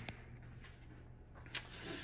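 Quiet room tone in a pause between speech, with a sharp click right at the start and another about one and a half seconds in.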